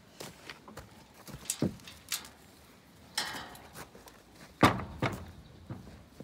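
Scattered knocks and thuds with footsteps on a straw-covered floor as a person moves around and handles a sheep in a wooden pen, with a short rustle about three seconds in and one loud thump near the end.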